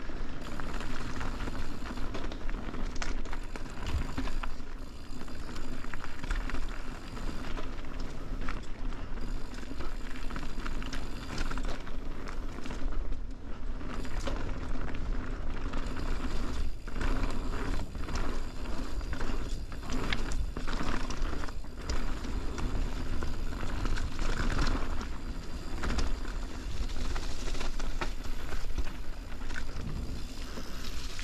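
Mountain bike riding fast down a dirt trail: steady tyre noise over dirt and fallen leaves, with frequent rattles and knocks from the bike over bumps.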